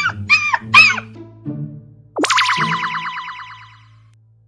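Cartoon dog-whimpering sound effect: a few high, wavering whines in the first second. About two seconds in comes a quick downward swoop, then a wobbling, twangy boing-like sound effect that fades out, over light background music.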